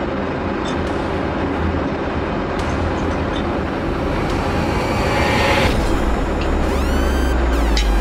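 An edited dramatic sound effect: a loud, steady rumbling noise that builds in its last few seconds, with a deep bass drone and rising sweeping tones.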